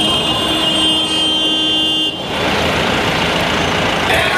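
A truck's horn sounding one long steady note that stops sharply about two seconds in, leaving the truck's engine and road noise.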